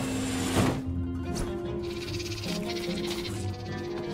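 Cartoon soundtrack: background score of sustained tones, with a short sharp hit just over half a second in and a rapid high fluttering sound effect from about two seconds in, lasting over a second.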